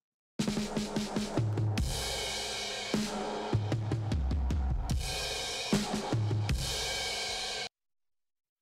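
A recorded music excerpt of drum kit with low bass notes, played back through a pair of Eventide Omnipressor 2830*Au compressors linked in stereo and applying gain reduction together. It starts about a third of a second in and cuts off suddenly near the end.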